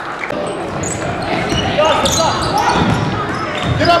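Basketball game in a gym: a ball thudding as it is dribbled on the hardwood floor, with short high squeaks of sneakers on the court and spectators' voices echoing in the hall.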